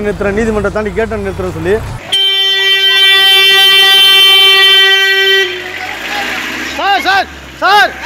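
A vehicle horn sounds one long, steady blast of about three seconds that cuts off sharply, between a man's speech and shouting voices.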